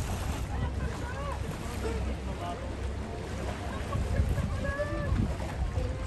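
Steady low rumble of a tour boat running on open water, with wind on the microphone and faint, scattered voices of other passengers.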